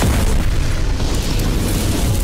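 Explosion sound effect for an animated logo intro: a loud, sustained booming rumble with heavy low end that holds steady.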